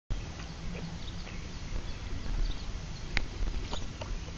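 Outdoor background noise: a steady low rumble with faint, short, high chirps every half second or so, and a single sharp click about three seconds in.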